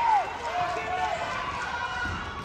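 Gym noise during a basketball fast break: a spectator's voice calling out once, over the steady background of players running on the hardwood court.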